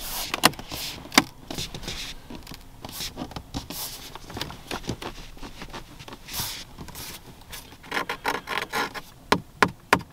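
A hand pressing, rubbing and tapping on the 2022 Lexus ES 350's dashboard trim around the instrument-cluster hood, giving scattered sharp clicks and knocks between stretches of rubbing. A denser flurry of rubbing comes about eight seconds in, and several sharp knocks near the end.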